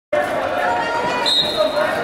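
Voices of spectators and coaches talking in a gymnasium hall. A short, steady high-pitched whistle sounds about a second and a quarter in.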